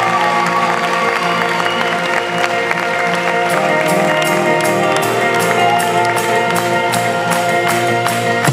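Live band playing the instrumental opening of a pop song: sustained held chords with guitar, a light ticking percussion coming in about halfway.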